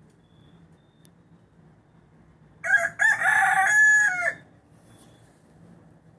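A bantam (garnisé) rooster crows once, a little before halfway through: a loud call of about two seconds that ends on a long held note, dropping off at the close.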